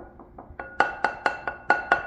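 Metal measuring cup tapped repeatedly against a glass mixing bowl to knock cornstarch out: a few light taps, then about six quick hard strikes in the second half, each leaving the bowl ringing.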